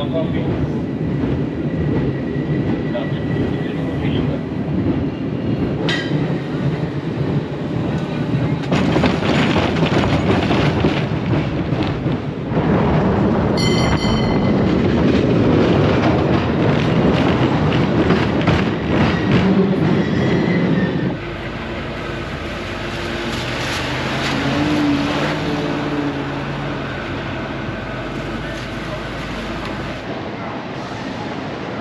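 A San Francisco cable car running along its street rails, a continuous rumble and clatter from the car and track, with a brief ringing tone about 14 seconds in. From about two-thirds of the way through the sound turns quieter and steadier.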